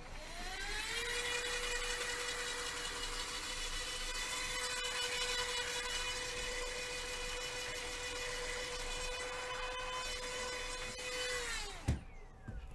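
A small electric motor whirring steadily. It spins up over about the first second and winds down near the end, with a sharp click just after it stops.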